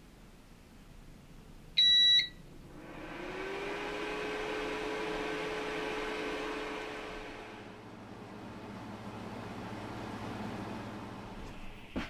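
Elegoo Mars resin 3D printer beeping once, then its motor starting with a whine that rises in pitch and holds steady for about five seconds. It then drops to a lower, fainter hum.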